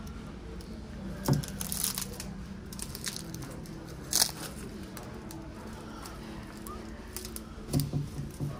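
Woven baskets rustling and creaking as they are handled, in a few short bursts over a low steady background hum.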